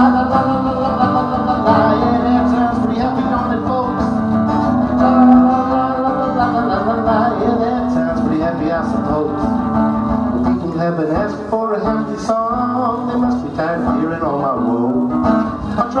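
Instrumental break on guitars: an acoustic guitar strumming steadily while a solid-body electric guitar plays a lead line over it, its notes bending and wavering in the second half.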